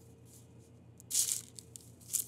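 A brief papery rustle about a second in, as the folded block of croissant dough is set down and pressed onto a parchment-lined baking tray.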